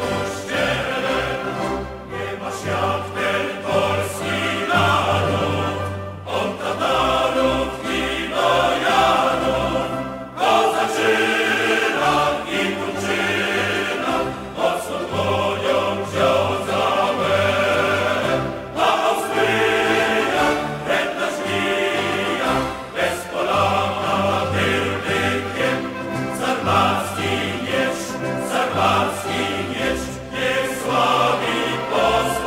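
Choir singing a triumphal march, with instrumental accompaniment and a steady bass line.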